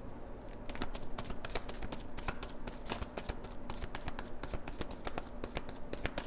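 A tarot deck being shuffled by hand: a continuous run of quick, irregular card flicks and clicks.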